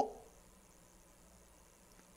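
A man's spoken word trailing off at the start, then near silence: faint room tone.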